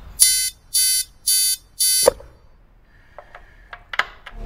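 An electronic alarm or buzzer beeping four times, evenly and quickly, each beep a short high-pitched tone. A few faint clicks follow.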